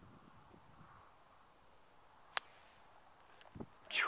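Quiet outdoor background broken by a single sharp click about two and a half seconds in, followed by a soft low thump shortly before the end.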